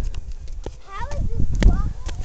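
Hard footsteps on bare rock, a few sharp steps, with a low rumble from the microphone. In the second half a person makes short wordless sounds that slide up and down in pitch.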